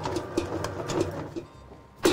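Stand mixer kneading bread dough, the dough hook slapping the dough against the steel bowl in soft, low thumps about three to four times a second. The dough is nearly fully kneaded. The thumping stops about one and a half seconds in, leaving a faint low hum.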